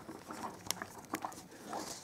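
Light plastic clicks and taps from an action figure and its accessories being handled, with two sharper clicks around the middle.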